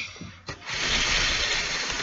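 Handling noise from a camera being moved about: a click at the start, then from about half a second in a steady scraping rustle against the microphone.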